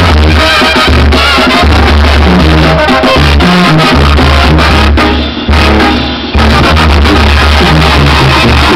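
Live Mexican brass banda playing an instrumental passage: trumpets and clarinets on the melody over a tuba bass line and drum kit. The band drops out briefly twice, about five and six seconds in, then comes back in.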